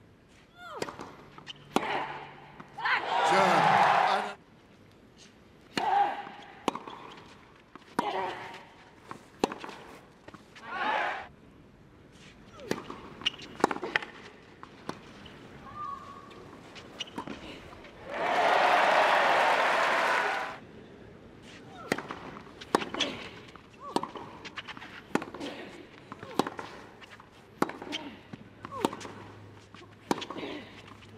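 Tennis rallies on a clay court: sharp racket strikes on the ball, with players' short voiced grunts on some shots. Bursts of crowd cheering and applause break in after points, the longest lasting about two seconds a little past the middle.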